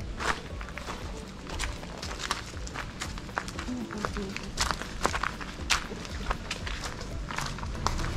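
Footsteps at a walking pace, crunching on a gravel path and then landing on a tiled porch, over background music.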